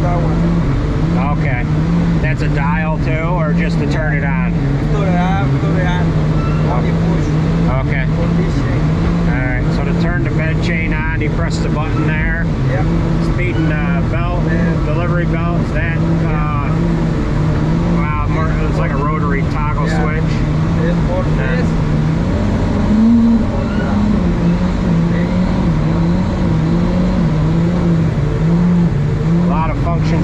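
Tractor engine running steadily under load while it drives a sand bedder, heard from inside the cab. The drone wavers a little in pitch and rises briefly about three-quarters of the way through.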